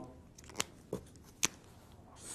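Faint sounds of drawing by hand on a writing surface, with three short sharp ticks of the pen or chalk tip in under a second.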